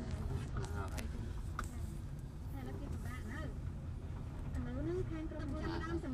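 Steady low rumble of a car moving slowly, heard from inside the cabin, with voices talking faintly over it.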